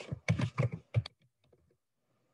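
Computer keyboard typing: a quick run of about eight keystrokes over the first second, then it stops.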